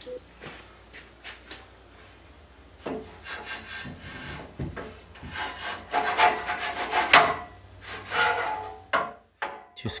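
Aluminum extrusion table being pushed and shifted by hand on the CNC router's frame: a few light knocks, then irregular scraping and rubbing, loudest in the second half.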